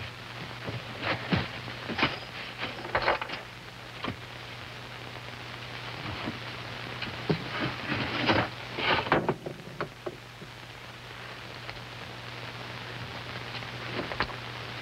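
Hands rummaging in a wooden chest: objects knocked and shifted against the wood in two bursts of clattering knocks, over a steady soundtrack hiss.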